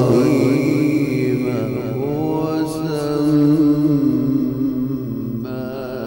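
A male qari reciting the Quran in a melodic style: one long, sustained phrase in a single voice, ornamented with wavering turns of pitch.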